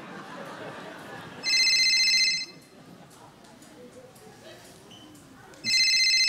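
Telephone ringing, a call going unanswered: two high, even rings, each just under a second long, about four seconds apart.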